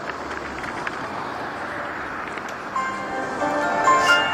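Steady road traffic noise, then about three seconds in a mobile phone's ringtone melody starts playing over it.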